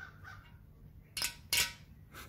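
Two sharp metallic clicks about a third of a second apart, a little past halfway: a steel bolt knocking against the cast-iron MGB engine block as it is pushed into a worn bolt hole that has no threads for the first three quarters of an inch.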